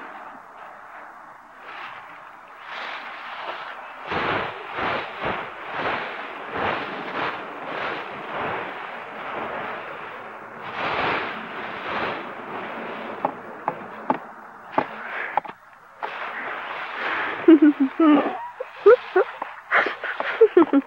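Dry fallen leaves crunching and rustling in a run of quick strokes, about two a second, as a toy rake and hands work through a leaf pile. A short voice sound comes near the end.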